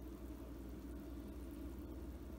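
Quiet room tone: a faint, steady low hum with no distinct event.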